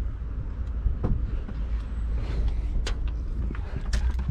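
A car door's latch and handle being worked, a few short sharp clicks about a second in, near three seconds and at the end, over a steady low rumble.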